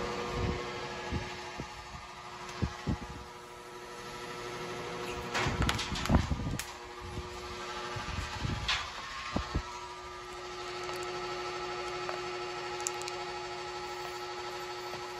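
Steady hum of an electric fan running, with scattered knocks and rustles as a cobra is picked up and handled on a wooden bench; the knocks are loudest in a cluster about five to seven seconds in.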